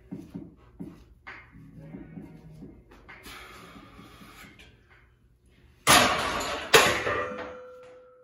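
Background music with a beat, then about six seconds in, two loud metal clanks a second apart as a loaded barbell is racked onto the power rack's hooks, the steel ringing on and fading afterwards.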